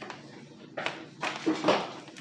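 A bar of Sunlight laundry soap being grated on a metal grater: about three short rasping strokes in the second half, the last the loudest.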